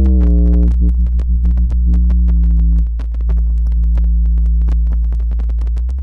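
Software modular synthesizer in VCV Rack, waveshaped through a ZZC FN-3: a low held note with a crackling, staticky layer of clicks over it. The level dips briefly about three seconds in, and the tone cuts off suddenly near the end, leaving only scattered clicks.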